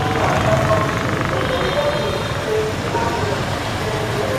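City street traffic: motorbike and car engines running and passing, mixed with the voices of people nearby.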